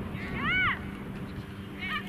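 A girl's high-pitched shout across the soccer pitch: one short call about half a second in, rising then falling in pitch, with shorter calls near the end, over a steady low hum.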